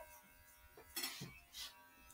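Near silence: quiet room tone, with a couple of faint brief sounds about a second in.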